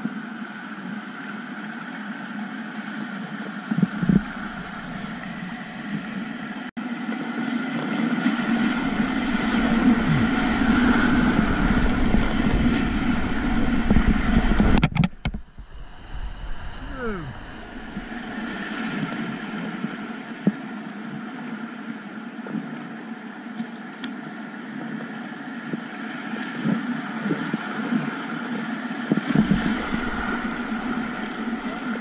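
Whitewater rushing and splashing around a kayak running a steep rocky rapid, with water buffeting the camera microphone in a heavy rumble. The sound cuts out sharply for a moment about halfway through.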